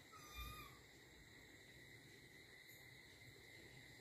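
Near silence: room tone, with one brief, faint, high-pitched wavering tone lasting about half a second near the start.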